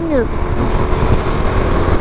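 A 2016 Suzuki DRZ400SM's single-cylinder four-stroke engine running at a steady cruising speed, under heavy wind rush on the camera microphone.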